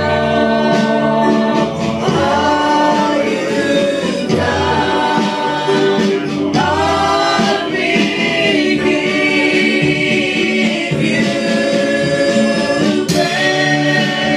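Several voices singing a church praise song together over an instrumental accompaniment, with long held notes.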